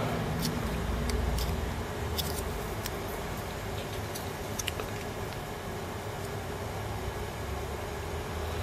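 Faint light plastic clicks and ticks, a few seconds apart, from handling a keyboard space bar and pressing a small white plastic plunger into its underside, over a steady low hum.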